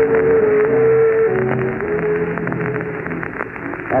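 Studio orchestra playing held notes under a rapid clattering sound effect meant to be a sewing machine. The music grows quieter near the end.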